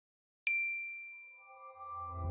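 A single bright chime sound effect struck about half a second in, ringing out and fading over about a second. Soft sustained tones and a low drone fade in near the end as intro music begins.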